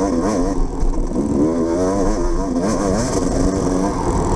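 Off-road dirt bike engine running hard on board, its pitch rising and falling quickly and over and over as the rider works the throttle through a twisting trail.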